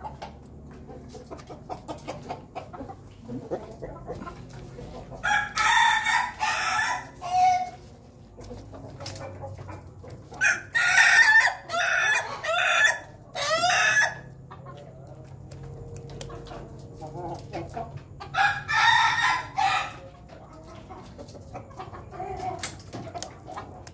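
Rooster crowing three times, a few seconds apart, the middle crow the longest.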